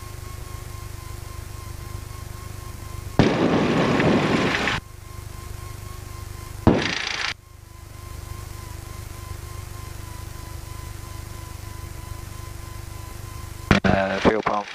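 A light single-engine piston aircraft's engine running at low taxi power, heard from inside the cockpit as a steady low drone with a faint steady whine over it. Two sudden louder, noisy bursts break in: one about three seconds in, lasting over a second, and a shorter one about seven seconds in.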